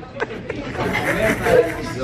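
Speech only: voices chattering, with a few short clicks near the start.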